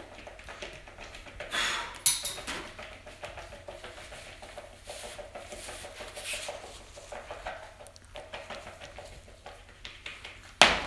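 A spoon stirring and scraping a wet mixture around a plastic mixing bowl: irregular scrapes and light knocks, with one sharper knock about two seconds in.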